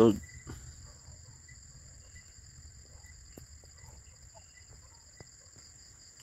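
Insects trilling steadily in high, continuous, finely pulsing tones, with a few faint scattered clicks.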